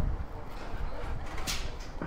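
Outdoor car-park ambience while walking: a low rumble on the microphone with faint distant voices, and a brief sharp noise about a second and a half in.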